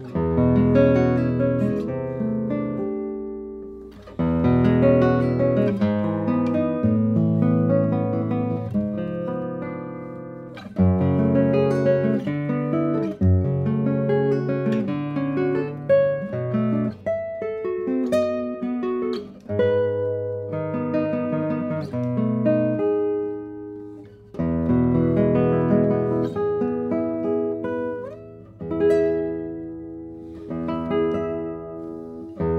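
Solo classical guitar, a Daniele Marrabello 2023 No. 165 with spruce top and Indian rosewood back and sides, strung with Knobloch nylon-and-carbon strings, fingerpicked in chords and melody. Notes ring on long, and phrases start loud about every four to eight seconds and die away between.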